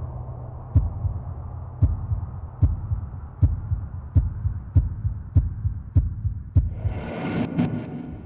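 Heartbeat sound effect: low thumps that speed up from about one a second to nearly two a second. A low drone fades out within the first second, and a hissing swell rises near the end.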